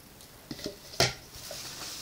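Kitchenware being handled: a plastic measuring jug put down and the next item picked up, with a few light clicks, one sharp clack about a second in, then a soft rustle.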